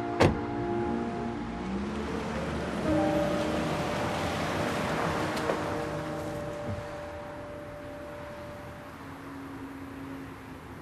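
A car door shuts sharply about a quarter second in, then a taxi pulls away, its engine and tyre noise swelling and fading over soft background music.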